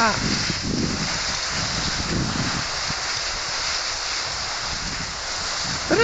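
Steady rushing hiss of skis gliding over packed snow while being towed along, mixed with wind on the microphone.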